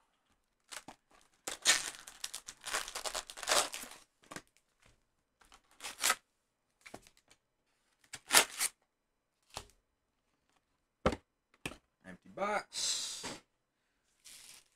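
Trading card pack wrappers crinkling and rustling as the packs are pulled out of a cardboard hobby box, mostly in a burst over the first few seconds. After that come a few short, sharp knocks of packs and cardboard being set down, and another short rustle near the end.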